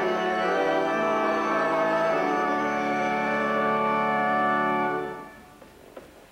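Organ playing held chords that fade out about five seconds in.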